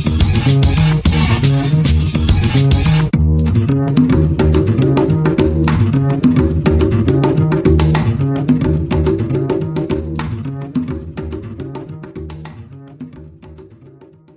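Background music: a full band with a bass line until about three seconds in, then a sparser part of bass and picked notes that fades out gradually near the end.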